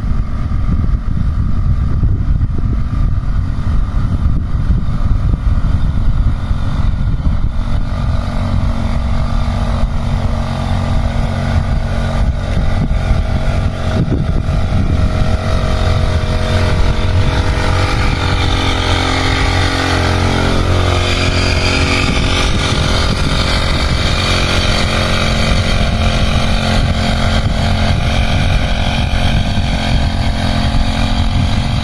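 Petrol-engine backpack power sprayer running steadily while spraying, its tone getting brighter around the middle as it comes close.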